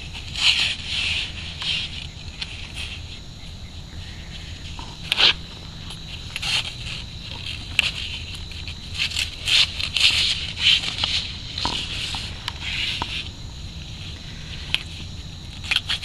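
A knife cutting through a bull shark's tail on concrete, heard as short, irregular scraping strokes in clusters. Crickets trill steadily in the background, with a low hum underneath.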